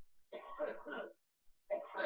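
A man coughing to clear his throat, two harsh bursts: one about a third of a second in, the other near the end.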